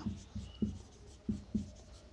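Marker pen writing on a whiteboard: a few short, separate strokes as a word is written.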